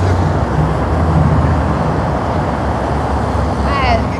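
Steady low engine rumble of heavy construction machinery and passing freeway traffic. A voice begins just at the end.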